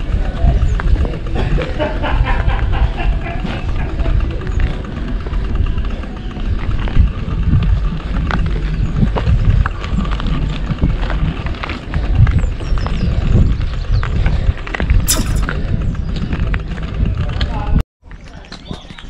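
Strong wind rumble on the microphone from riding a touring bicycle over a dirt road, with irregular knocks and rattles from the bike throughout.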